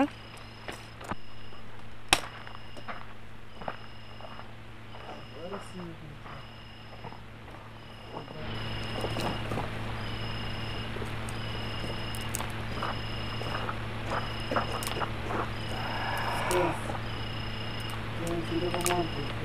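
Sticks being handled and laid on a small campfire, with scattered snaps and clicks. Through it all a faint, high, two-pitched chirp or beep repeats about once a second.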